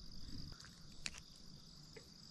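Faint, steady, high-pitched insect buzz, with a faint click about a second in.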